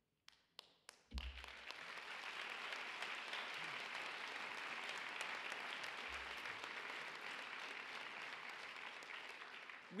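Audience applauding: a few scattered claps, then steady applause from about a second in that eases slightly near the end.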